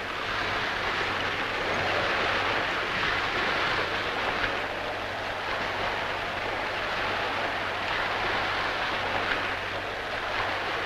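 Sea water washing around a small rowboat: a steady rushing noise with a faint low hum underneath.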